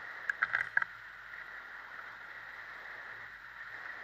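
Steady muffled noise from a hang glider in flight, heard through the camera's housing, with a few quick sharp clicks in the first second.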